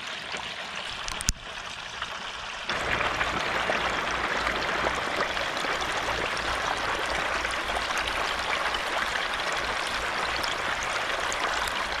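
Hot oil bubbling and sizzling vigorously around a whole turkey in a large aluminium fry pot over a propane burner. There is a sharp click about a second in, and the bubbling gets louder a little under three seconds in.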